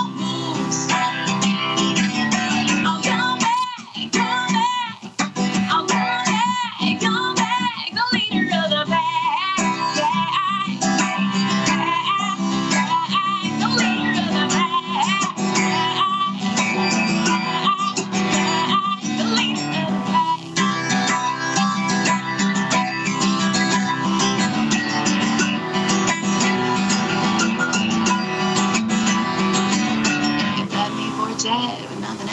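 A woman singing with vibrato while strumming an acoustic guitar, heard over a Skype video call.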